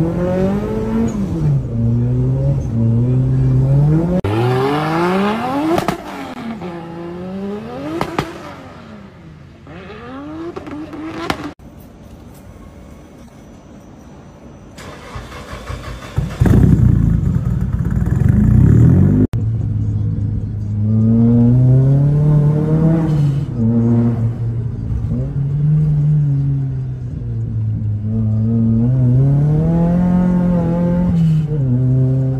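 Car engines revving up and down over and over, heard from inside the cabin, in several short clips cut together. Near the middle there is a quieter stretch, then a loud, low engine burst of about three seconds.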